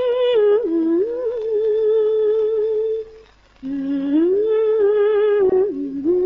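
A woman humming a slow, wordless melody in long held notes with vibrato, in two phrases with a short break about three seconds in.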